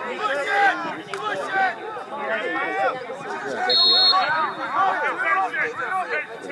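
Several voices talking and calling out over one another on the sideline of a lacrosse game. About four seconds in, a referee's whistle gives one short, high blast.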